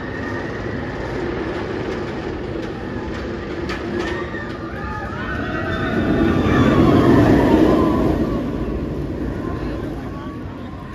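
Banshee inverted roller coaster train rattling steadily up the lift hill. About six seconds in it crests and dives, swelling into a loud rushing roar over the track, with riders shouting and screaming as it goes over.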